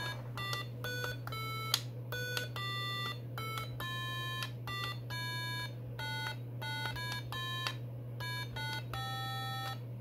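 Home-made Arduino Nano electronic piano sounding through a small 8-ohm speaker: a quick string of short, bright beeping notes at changing pitches as its push-button keys are pressed one after another. A steady low hum sits under the notes.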